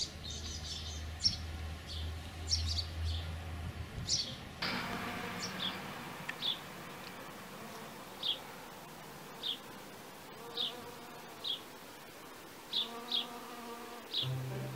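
A honeybee buzzing around flowers, with short high bird chirps repeating about once a second.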